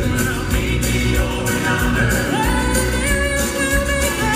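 Southern gospel male quartet singing in harmony on stage, backed by piano and electric bass guitar, with a rising vocal slide a little past two seconds in.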